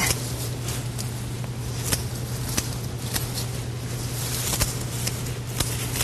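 Scissors snipping ivy stems, a scattering of short sharp clicks at irregular intervals, over a steady low hum.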